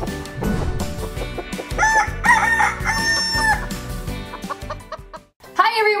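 Cartoon chicken clucking and a rooster crow, a held note, over a short intro jingle about two to three and a half seconds in. The music fades away just after five seconds.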